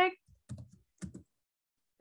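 Computer keyboard keys tapped in two quick short clusters, about half a second and a second in, as text is typed.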